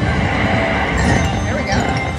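Red Festival (Bao Zhu Zhao Fu) slot machine playing its win sound effects, a sudden burst followed by chiming, as a line win counts up on the win meter.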